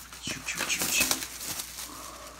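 Plastic wrap and cardboard rustling and crinkling as a folded board-game board is lifted and slid out of its box, loudest in the first second and then fading.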